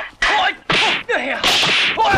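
Film fight sound effects for a wooden-staff fight: about four rapid whip-like swishes of swung poles, one after another. Shouts from the fighters run through the swishes.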